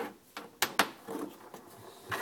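Plastic PCM wiring-harness connector being handled, with light rubbing and a few sharp plastic clicks, two of them close together under a second in.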